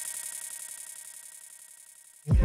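Echo tail of an electronic dance track from a Pioneer DJ mixer's echo effect: the track's volume has been pulled away and only its repeats carry on, fading steadily toward silence.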